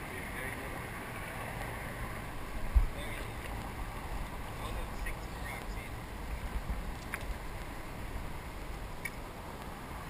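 Low, fluttering rumble of wind and handling on a small action camera's microphone, with one sharp knock a little under three seconds in and a few faint clicks later on.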